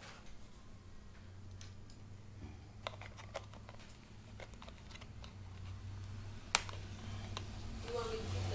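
Irregular light clicks and taps from small objects being handled at close range, over a low steady hum, with one sharper click about six and a half seconds in.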